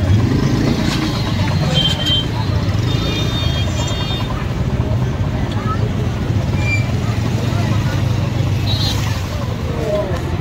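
Traffic-jam din of idling motorcycle and scooter engines, a steady low hum, with voices chattering in the background. A few brief high-pitched horn beeps come about two seconds in, around three to four seconds, and near the end.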